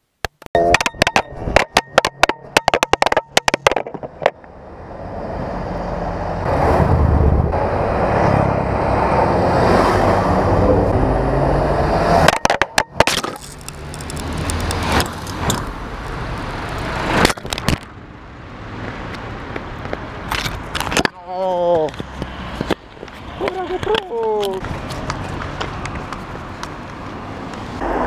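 A GoPro camera tumbling and clattering across asphalt after breaking off a helmet mount. It then lies in the road as cars drive past close over it, with tyre and engine noise swelling and fading, and a few sharp knocks and cracks in between as it is struck and run over.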